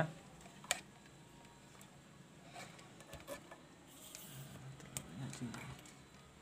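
Faint handling of motorcycle handlebar wiring and plastic connectors by hand: a sharp click just under a second in, then soft small taps and rustles.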